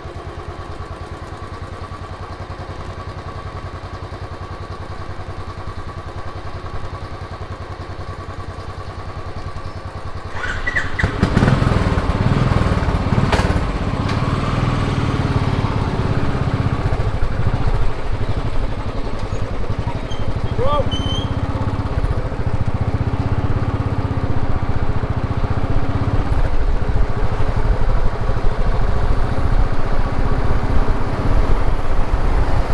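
Motorcycle engine idling steadily. About ten seconds in it gets louder as the bike pulls away, and it runs on under way.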